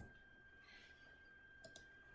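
Near silence with two faint clicks close together near the end, a computer mouse being clicked.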